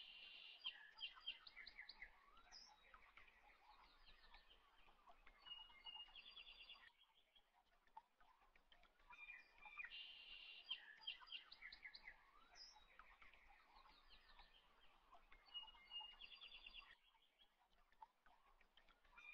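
Faint bird chirps and trills, a looped recording: about seven seconds of chirping, a short lull, then the same stretch of chirps again.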